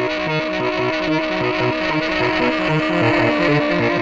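Solo saxophone played live: one note held without a break over a fast, repeating low figure of alternating pitches.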